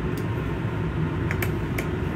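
A few sharp clicks of light switches being flipped in a coach's living quarters, over a steady low hum.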